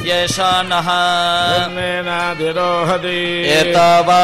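A group of priests chanting Vedic mantras together in a steady, drawn-out recitation, holding each note at one pitch with slow steps between syllables.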